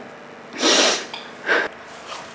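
A woman's loud, noisy breath about half a second in, then a shorter one about a second later, as of upset sniffing.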